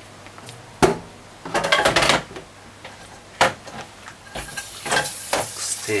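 A metal spoon knocking and scraping against an aluminium cooking pot of stew: a sharp knock about a second in, a run of clattering around two seconds, then more knocks and scraping toward the end.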